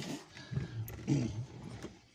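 A man's low, indistinct voice, two drawn-out vocal sounds starting about half a second in and about a second in.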